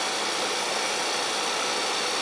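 Vacuum pump of an oxygen plasma cleaner running as it pumps the sealed chamber down, a steady even rushing hiss.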